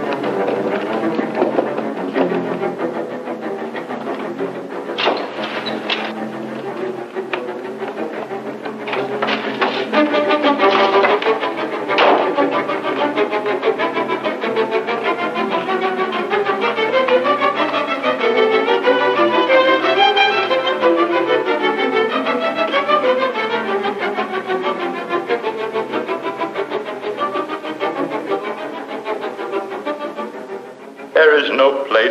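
Dramatic orchestral film score led by bowed strings, with several sharp accents in the first twelve seconds, then sustained string lines that rise and fall.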